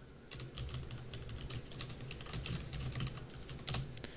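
Typing on a computer keyboard: a quick, uneven run of key clicks, with one louder keystroke near the end.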